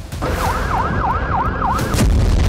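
Electronic siren in a fast yelp, its pitch sweeping up and down about three times a second over a low rumble. It begins about a quarter second in.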